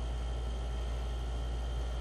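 Steady low hum with a faint even hiss: background room tone.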